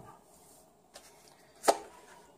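A tarot card drawn from the deck and laid on the table: a faint tick about a second in, then one sharp tap near the end.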